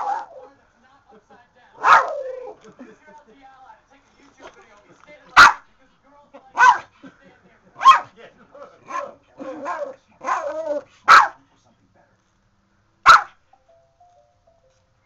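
A small dog barking in sharp single barks, about ten of them at uneven intervals with a quick run of several near the middle: it is barking excitedly at a bouquet of roses held out to it.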